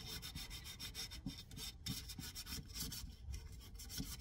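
220-grit sandpaper rubbed by hand over a painted wooden table leg in a light scuff sand: faint, quick back-and-forth scratching strokes.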